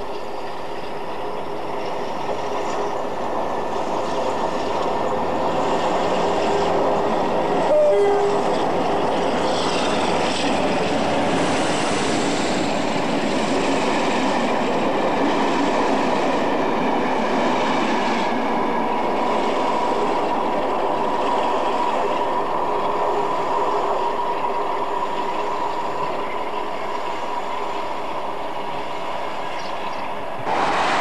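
Passenger train passing close through a station, its wheels running and clattering on the rails. The sound builds over the first several seconds, with one short, sharp sound about eight seconds in, then holds steady as the long rake of coaches goes by.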